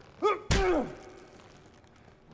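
A punch landing with a sharp thud about half a second in, with a man's short pained grunts just before and after it, from a TV drama's soundtrack.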